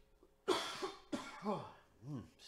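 A man coughs twice in quick succession, the first sudden and loudest about half a second in, the second about a second in.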